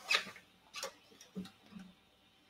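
A few light knocks and taps from an acoustic guitar being handled by its neck and moved.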